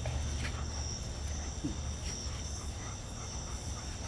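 Crickets chirping steadily in a thin, high-pitched night chorus over a low steady hum.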